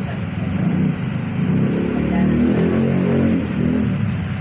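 A motor vehicle engine running loud and low-pitched, louder through the middle and easing off near the end.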